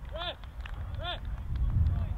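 Wind rumbling on the microphone, loudest near the end, with two short, high, arching calls about a second apart.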